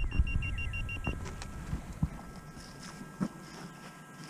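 Handheld metal-detecting pinpointer beeping rapidly, about eight short beeps a second for the first second, as its tip is held against a metal target in the soil, over a low rumble. After that, faint scraping and rustling of dirt and dry grass.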